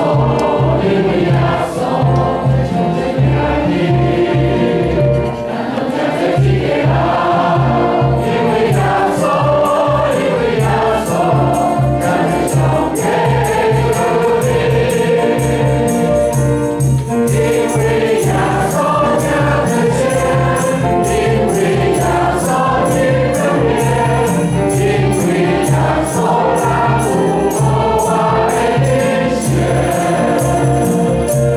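Church congregation and choir singing a hymn in Taiwanese Hokkien to piano accompaniment, with a steady beat. About eight seconds in, a rhythmic high jingling percussion joins.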